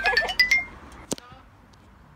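A rising run of bright chime notes, an edited title sound effect, ends about half a second in, with a brief wavering voice-like sound over its end. A single sharp click follows about a second in, then only faint background.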